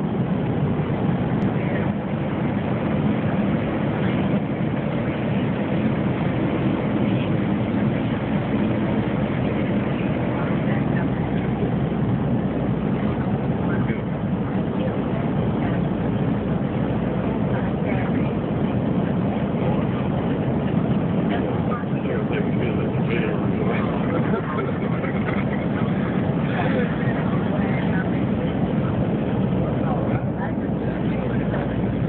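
Steady low hum of an airliner cabin in flight: engine and airflow noise, unbroken throughout, heard through a phone microphone.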